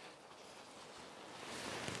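Faint rustling of a synthetic insulated jacket's fabric as it is handled and swung on, growing louder near the end.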